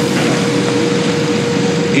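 Steady hiss of room background noise with a constant low hum running through it, as loud as the speech around it.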